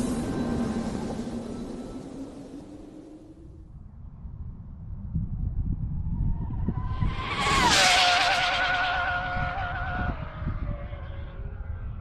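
Stretched Hobao VTE2 RC car, powered by three electric motors on 8S batteries, making a high-speed pass: a rising motor whine with tyre noise that drops sharply in pitch as it goes by about seven and a half seconds in, then fades away. Wind rumbles on the microphone, and the first few seconds hold the fading tail of an intro whoosh effect.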